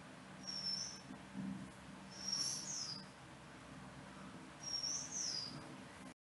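Faint small bird chirping: short, high, falling notes in three bouts, the last two each a quick pair, over a low steady hum.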